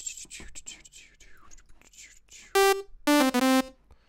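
Two short bright, buzzy notes from the Harmor software synthesizer on its default patch, played to test it just after loading: a brief higher note, then a longer lower one.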